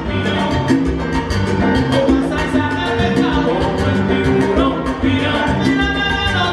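Live salsa band playing, with timbales, congas and keyboard over a steady, driving percussion beat.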